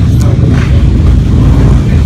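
Loud, steady low rumble of motor vehicle engines running nearby.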